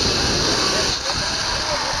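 Zipline trolley pulleys running along the steel cable during a ride, a steady loud hiss mixed with wind rushing over the microphone, easing slightly about a second in.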